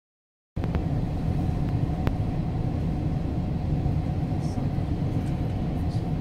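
Steady low rumble of a moving passenger train heard from inside the carriage, starting abruptly about half a second in, with one sharp click about two seconds in.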